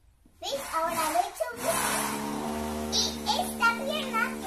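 A young girl's voice: about a second of unclear vocalizing, then one long held vocal note lasting about two seconds, then more short vocal sounds near the end.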